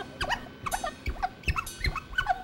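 A quick run of short, high squeaky chirps, about five a second, bending up and down in pitch, with a few low thuds in the second half. These are noise sounds within an experimental live music performance.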